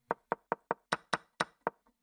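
Eight sharp, quick clicks, about five a second, made by a computer key or button pressed repeatedly to step a game forward move by move.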